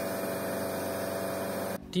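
Fire truck's engine running steadily while its water cannon sprays, a steady hum under an even hiss; it cuts off suddenly shortly before the end.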